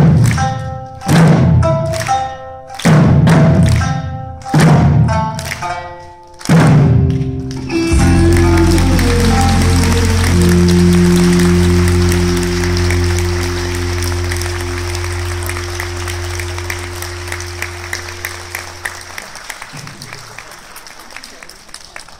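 Eisa taiko drums struck together in five big accented hits, roughly every one and a half to two seconds, over backing music. About eight seconds in, the music settles into one long held chord that fades out, while an audience applauds, the applause slowly dying away.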